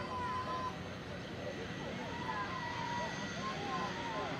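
Steady drone of a light aircraft's engine, with a high, even whine.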